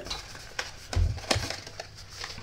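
Heavy 110 lb cardstock being bent and creased by hand along a curved score line, a fingernail pressed along the crease: a light rustle with a few sharp crackles as the card gives, and a dull bump about a second in.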